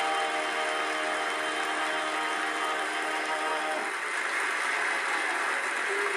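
Barbershop quartet's voices holding a steady final chord, which cuts off about four seconds in, with audience applause under it that carries on afterwards. Heard through a TV's speaker.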